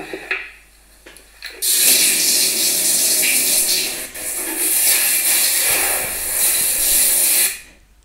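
Water from a bathtub mixer tap rushing steadily into a bathtub as the bath is filled. It starts about a second and a half in and stops suddenly just before the end.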